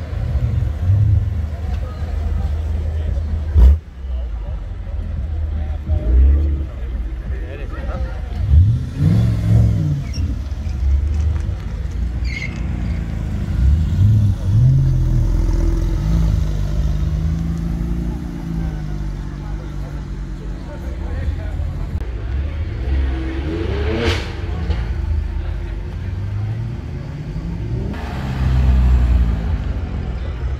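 Performance car engines driving off one after another, a BMW M4 coupe then a Porsche 911 Carrera, revving up and easing off several times as they pull away. A single loud sharp crack about four seconds in, and a car sweeping past near 24 seconds, over spectators' voices.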